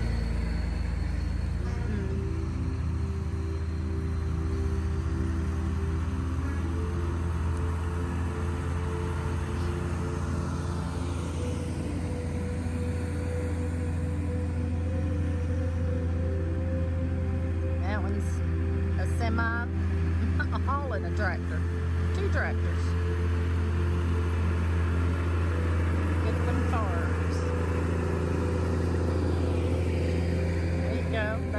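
Diesel engines of semi trucks and tractors running as they pass slowly in a line, a steady low drone whose pitch shifts as each vehicle goes by.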